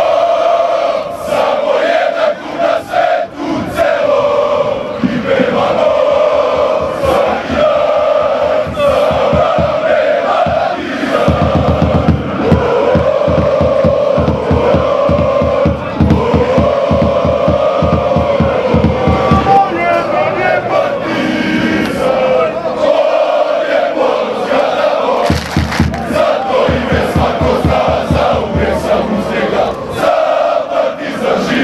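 A large crowd of football supporters singing a chant together in unison. For two stretches, from about a third of the way in and again near the end, a fast rhythmic beat pounds under the singing.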